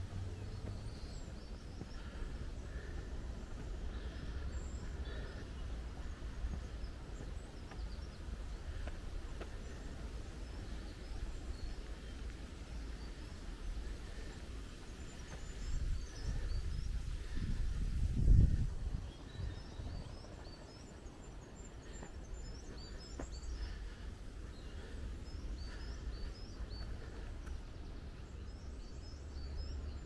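Outdoor ambience: a steady low rumble on the microphone with faint, scattered bird chirps, which come more often in the second half. A louder low rumble swells up and peaks about 18 seconds in.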